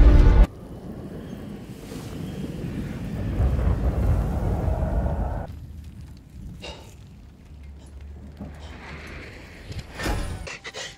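Film soundtrack: loud music cuts off abruptly half a second in, leaving a low, noisy rumble that swells and then fades after about five seconds. A couple of faint whooshes follow, and then a quiet low hum.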